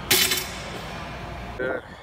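A single sharp metallic clank from a loaded curl bar and its weight plates, ringing briefly, over steady gym background noise.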